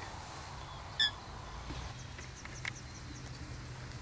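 Quiet outdoor background with a single brief bird chirp about a second in.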